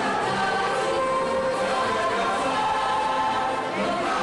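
Mixed choir of men's and women's voices singing together, holding long notes that shift in pitch without a break.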